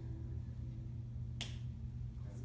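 A single sharp hand slap about one and a half seconds in, over a steady low hum.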